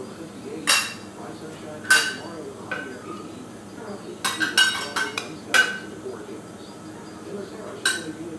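Metal measuring cups and utensils clinking against each other: about ten sharp, ringing metallic clinks, spaced a second or so apart, with a quick run of them about four to five seconds in.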